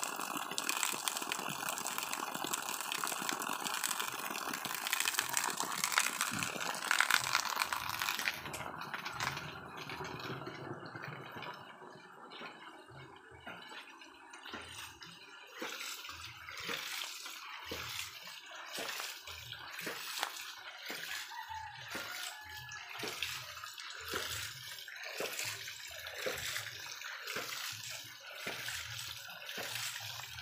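Water from a 4-inch PVC hydraulic ram pump's raised output pipe splashing steadily. About a third of the way in it gives way to the pump's waste valve cycling in a steady rhythm of a little over one beat a second, each beat with a spill of water from the valve.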